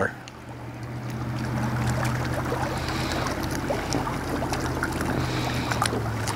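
Water lapping against a fishing boat over a steady low hum, with a few faint clicks as a spinning rod and reel are worked.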